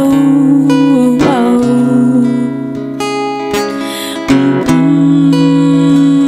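Cutaway acoustic guitar strummed, with a woman singing long held notes over it; the playing drops softer for a moment in the middle.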